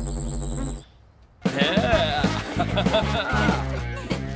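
A steady electronic hum, the sound effect for a glowing laser fence switched on, cuts off just under a second in. After a short pause, background music starts.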